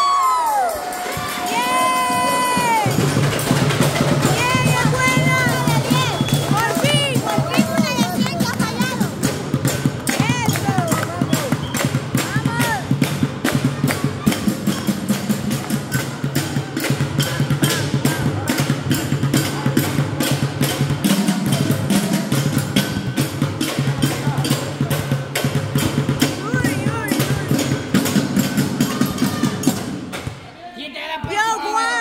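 Spectators beating improvised drums, cooking pots and a plastic bucket struck with sticks, in a fast, steady beat of about three or four knocks a second that runs through most of the stretch. Loud whoops and cheering come over the first several seconds, and a steady low hum runs underneath.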